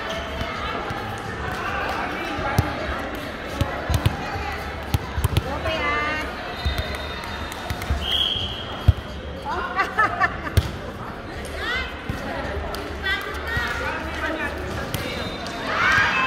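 A volleyball rally in a large indoor hall: the ball is hit back and forth in sharp slaps off players' hands and forearms, several in quick succession, the loudest about nine seconds in. Players shout and call to each other between hits.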